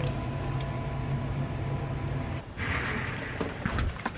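Rustling and handling noise from a moving, hand-held camera over a low rumble, with a few sharp clicks late on.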